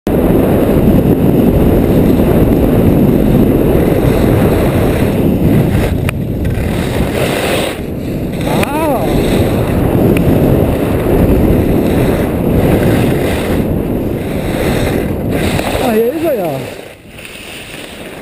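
Loud wind rushing over the body-worn camera's microphone as the skier runs fast down a groomed piste, mixed with the hiss of skis on the snow. It falls away sharply near the end as the skier slows, and a brief voice cuts through about halfway and again near the end.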